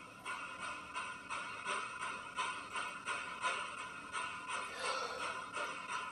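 Spirit box radio sweeping through stations: choppy static that breaks into short bursts, about three a second, with brief snatches of broadcast sound.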